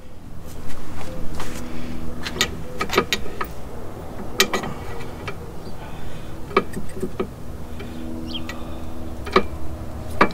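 Irregular metal clinks and knocks, about ten in all, as a stuck driveshaft U-joint is worked in a bench vise, over a steady low hum.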